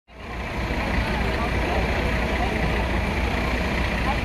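A coach bus's engine idling with a steady low rumble, with people's voices faintly in the background.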